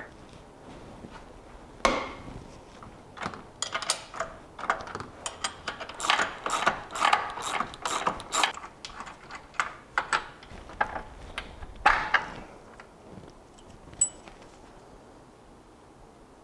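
Socket ratchet clicking in quick uneven runs as an 18 mm control arm bolt is loosened while the other end is held with a wrench, with light metal clinks of the tools. The clicking stops about three-quarters of the way through, followed by one sharp click.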